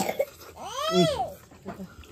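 A baby's single babbling call that rises high in pitch and falls again, after a brief click at the start.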